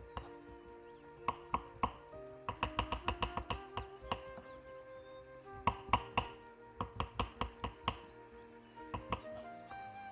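A knife chopping walnuts on a wooden cutting board: quick runs of sharp knocks on the board, coming in several separate bursts, over background music.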